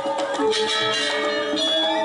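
Balinese gong kebyar gamelan playing: bronze metallophones ring out in many steady, bell-like tones under quick repeated strikes, with a strong accented stroke about half a second in.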